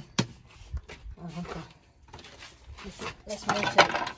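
Hands tapping a sheet of ceramic wall tile into wet cement: two sharp taps at the start. Later there is a brief low murmur, then near the end a run of scraping and clinking as tiling work goes on.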